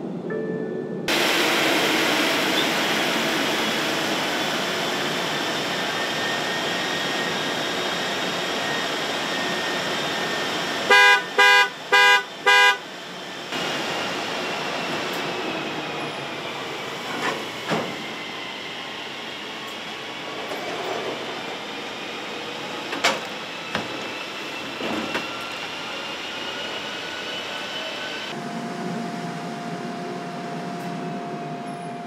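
New car's wheels spinning at speed on a rolling-road test stand during end-of-line testing: a steady rushing noise with a faint whine that slowly falls and rises. About eleven seconds in, a car horn sounds four short honks, and a few sharp clicks follow later.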